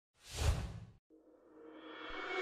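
A single whoosh sound effect that swells to a peak about half a second in and dies away by one second. After it, background music fades in slowly.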